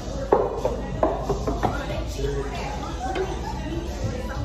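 Voices and music with singing, with three sharp knocks in the first two seconds, the first the loudest.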